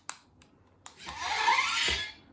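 Remote button clicks, then the motorized faceplate of a Mark II Iron Man helmet replica opening with about a second of servo whirring that stops abruptly with a low thump.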